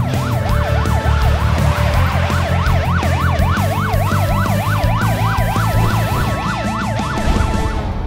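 Police car siren sweeping rapidly up and down a couple of times a second, over background music. It stops near the end.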